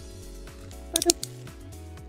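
Soft background music with steady held chords. About a second in comes a brief cluster of sharp clicks from a small blade cutter working at plastic bubble-wrap packaging, together with a short grunt.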